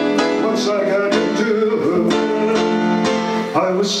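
Instrumental break in a live song: a Roland keyboard plays a run of plucked-string, guitar-like notes. The singer comes back in right at the end.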